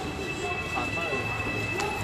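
A steady mechanical hum with a thin, high, unbroken whine above it, and faint voices of people talking.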